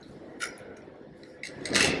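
A pause in a man's speech: low room noise with a faint click about half a second in, and his voice starting up again near the end.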